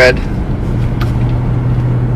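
Steady low hum and road rumble inside a moving car's cabin, with one short click about halfway through.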